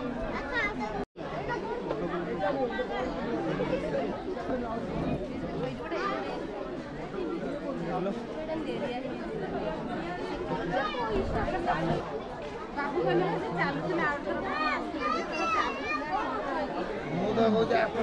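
Several people talking at once: unrecognised chatter of voices that runs throughout, with higher, livelier voices about three-quarters of the way through. The sound cuts out for an instant about a second in.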